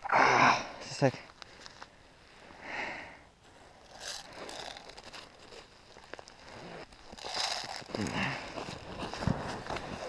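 Handling noises in snow: clothing rustling, snow crunching and scraping as bare hands work an airsoft magazine, in short scattered bursts with a louder one at the very start.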